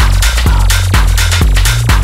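Electronic dance music: a steady four-on-the-floor kick drum, about two beats a second, under a deep bass line, with bright hi-hat-like percussion between the kicks.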